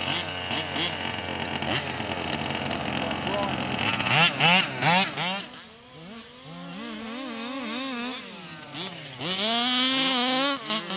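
The two-stroke petrol engine of a 1/5-scale RC buggy revs hard and eases off in quick rises and falls of pitch. It is loudest about four seconds in and again near the end.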